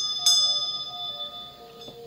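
Small brass hand bell rung with two quick strokes, the second just after the start, its high, bright ring fading away over about a second and a half.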